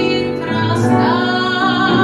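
Soprano singing a traditional Sicilian serenade, accompanied by an upright piano, with a breath before a held, vibrato-rich note in the second half.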